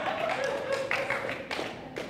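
Scattered light handclaps from a few people, irregular and sparse, over a faint murmur of voices in a large room.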